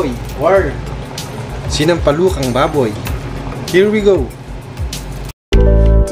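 A person's voice over background music with a steady low hum underneath. Just past five seconds the sound cuts out for an instant, and louder music with held notes begins.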